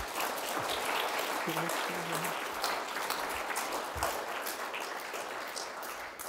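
Audience applauding, steady at first and starting to die down near the end.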